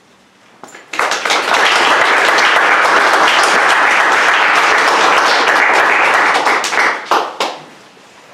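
Audience applauding, starting about a second in and dying away into a few scattered claps near the end.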